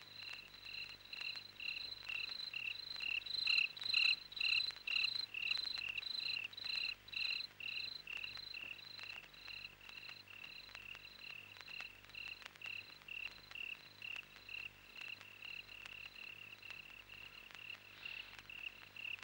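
Crickets chirping steadily as night ambience, a high pulsed chirp repeating about three times a second.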